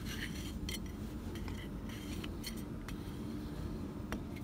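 Faint metallic clicks and light scraping as a wing nut is turned by hand on the threaded stud of a welder-generator's metal air-cleaner cover, over a low steady background hum.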